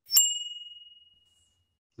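A single bright ding, like a chime or small bell, struck once just after the start and ringing out for about a second and a half.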